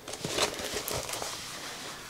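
A rolled diamond-painting canvas with a plastic cover being unrolled across a wooden table: a few soft crinkles and rustles in the first second, then fainter rustling that fades.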